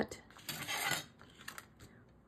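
A ruler and paper being handled on a craft table: a short scraping rustle about half a second in as the ruler slides into place on the card, then a few light taps.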